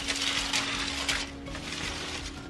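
Rustling and scraping of artificial plants and branches being handled and pulled out of a reptile enclosure, loudest in the first second and a half, then softer.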